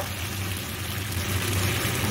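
Chicken pieces frying in oil and spice masala in a kadai, a steady sizzle over a low, steady hum.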